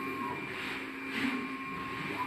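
Steady machine hum of a single-pass digital inkjet printer, with a few steady tones held through it and two brief swells of hiss near the middle.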